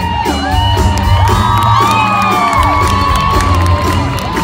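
Live rock band playing loudly through an arena PA, with acoustic guitars, fiddle and a steady drum beat, while the crowd whoops and cheers over the music.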